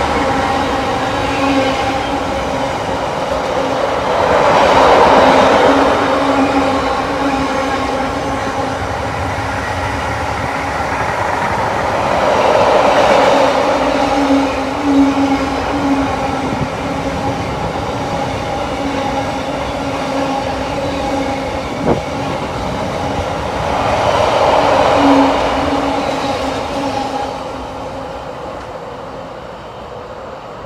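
Wheels of a long intermodal container freight train's flat wagons running past at speed: a continuous rumble that swells and eases as wagons go by, with a low hum that comes and goes and one sharp click about two-thirds through. The sound fades over the last few seconds as the end of the train draws away.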